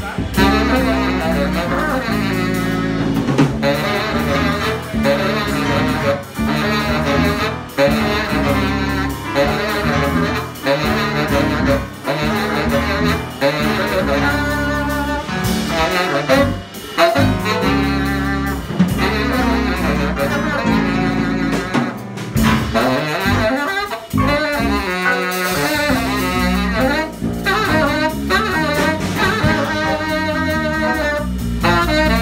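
Live jazz band playing: a saxophone carries a busy, quick-moving line over drum kit, bass and electric guitar.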